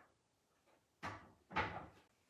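Two brief knocks of objects being handled, about half a second apart, each dying away quickly.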